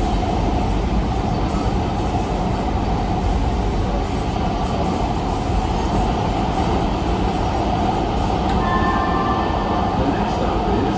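AnsaldoBreda P2550 light rail car running, heard from the cab: steady rolling noise of wheels on rail as it passes into a tunnel. A faint high whistling tone comes in near the end.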